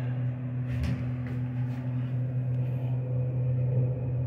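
Thyssenkrupp traction elevator car travelling upward, giving a steady low hum and rumble, with a light knock a little under a second in.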